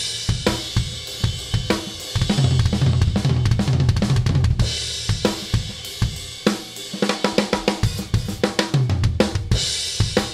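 A drum kit played in a rock groove, with snare hits and several cymbal crashes, picked up by close mics, overheads and a room mic nine feet from the snare. Partway through, the room mic goes from out of phase, which makes the snare sound papery and thin, to back in phase, which makes it crisper with more body.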